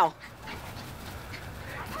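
Small dog growling quietly in play while wrestling with a ball.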